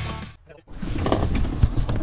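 Background rock music fades out about a third of a second in. After a brief gap, live outdoor sound takes over: a steady noise bed with a few short knocks and rustles.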